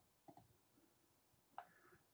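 Near silence with a couple of faint computer mouse clicks about a third of a second in, as the spacing arrow buttons are pressed.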